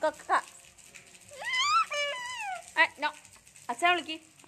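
A toddler babbling in short high-pitched voice sounds, with one long squeal about halfway through that rises and then falls in pitch.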